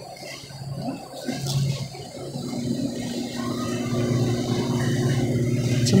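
A steady low mechanical hum that comes in a couple of seconds in and grows gradually louder, over faint handling noise.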